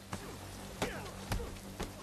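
Movie soundtrack of heavy rain falling, with several sharp hits about half a second apart from the blows of a hand-to-hand fight.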